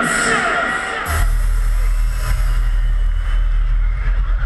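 Hardcore electronic intro music played over a large PA system: the echoing tail of a processed vocal fades out in the first second, then a deep, steady bass drone comes in and holds.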